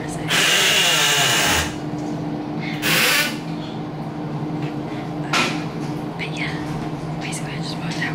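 Two loud bursts of hissing, the first lasting over a second and the second about half a second, with a smaller puff later, over a steady low hum.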